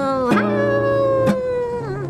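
Acoustic guitar chords ringing under one long held wordless sung note that slowly sinks in pitch and bends down near the end.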